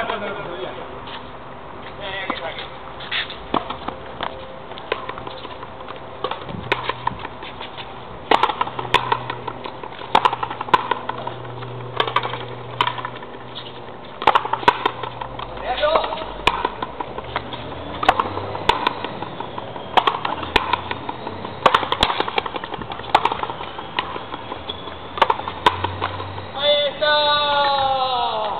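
Frontenis rally: sharp cracks of the rubber ball off the rackets and the fronton wall, at irregular intervals of about a second, with voices in the background.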